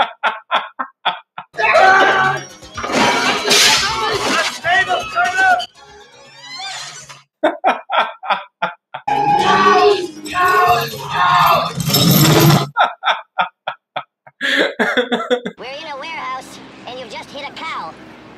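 Film soundtrack of a comedic car chase: voices and music with crashes of breaking and shattering objects as the car hits things. Short runs of hearty laughter come in between.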